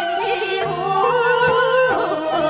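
A woman singing a Korean folk song with held, wavering notes, accompanied by traditional Korean instruments.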